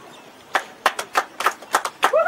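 A few people clapping: sharp, separate claps at an uneven pace, starting about half a second in.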